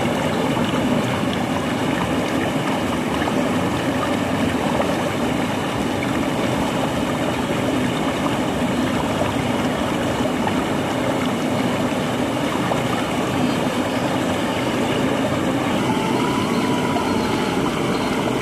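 Water rushing steadily down a narrow concrete channel and through a fine mesh fishing net set across it.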